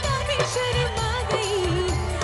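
A woman singing a melody into a handheld microphone, her held notes wavering with vibrato, over a rhythmic instrumental backing with a steady beat.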